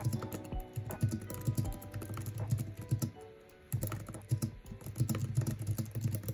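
Rapid typing on an Apple wireless keyboard's low-profile keys, a quick run of soft clicks with a short pause about three seconds in, over background music.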